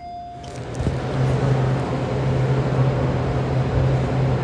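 Loud, steady background rumble with an even low hum through it, swelling in over the first second.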